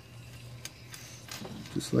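Small #16 zinc jack chain links clinking faintly as they are hooked together by hand, a few light metallic ticks.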